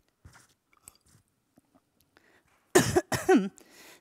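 A woman sipping and swallowing water, faint small sounds at first, then coughing twice to clear her throat, loud, near the end.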